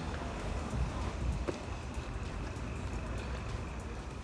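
Faint, steady low rumble of outdoor background noise, with one soft tick about a second and a half in.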